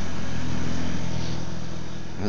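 A steady low mechanical hum, like a motor or engine running, with a faint hiss over it.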